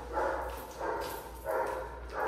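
A dog barking repeatedly, three barks in about two seconds at an even pace.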